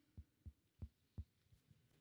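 Handheld microphone being tapped: five soft, dull thumps, about three a second, before speaking into it.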